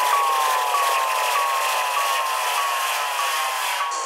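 Psytrance breakdown with the kick drum and bass dropped out: a hissing noise wash under a synth note that slides slowly downward and restarts about every 0.6 seconds, the slides overlapping like echoes.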